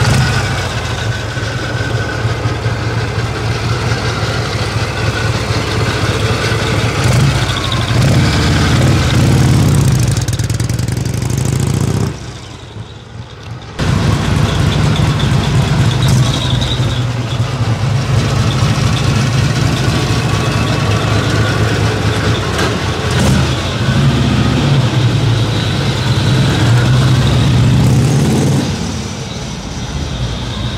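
1959 Harley-Davidson FLH Duo Glide's 74 cubic inch Panhead V-twin running, with a steady low throb. The revs rise and fall twice, once just before a brief break around twelve seconds in and again in the second half.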